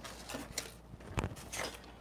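Stampin' Up! hand-cranked die-cutting machine rolling a cutting-plate sandwich through its rollers, with faint mechanical creaks and clicks and one sharper click a little over a second in.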